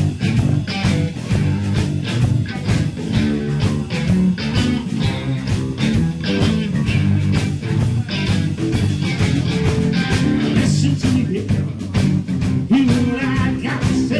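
Live blues-rock band playing: electric guitar over bass guitar and drums, with a steady drum beat.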